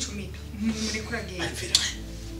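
Metal kitchen knife blade clinking, with one sharp, bright clink near the end over a low steady hum.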